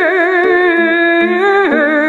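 A woman singing a long held note with wide vibrato, accompanied by a bowed lyre (jouhikko) whose steady lower notes step between pitches beneath the voice. Her voice moves to a new note near the end.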